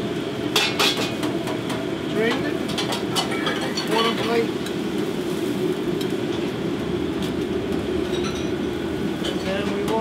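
Steady rush of a commercial kitchen's gas burners and exhaust hood, with metal clinks from a wire spider strainer and utensils against the pot and plate, the loudest about a second in.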